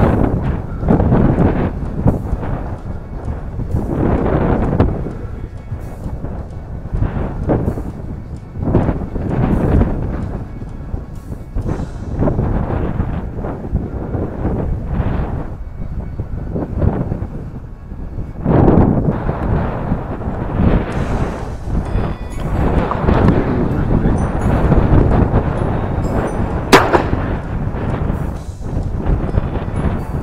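Wind buffeting the microphone of a handheld camera in gusts, a deep rumbling noise that rises and falls every second or two, with handling rustle. A single sharp crack comes near the end and is the loudest sound.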